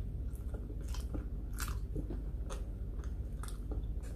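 Close-miked chewing of a mouthful of soft banana, with a handful of sharp, irregular wet mouth clicks over a low steady hum.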